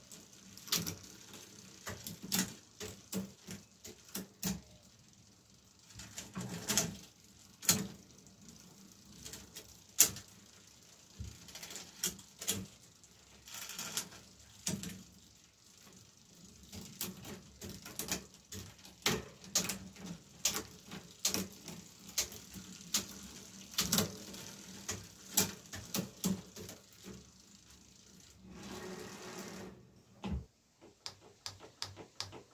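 Bicycle drivetrain turned by hand on a workstand: chain running over the chainrings, rear derailleur and cassette, with irregular light clicks and ticks throughout and one louder click about ten seconds in.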